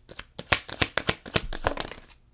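A deck of tarot cards being shuffled by hand: a rapid run of sharp card slaps and flicks, several a second.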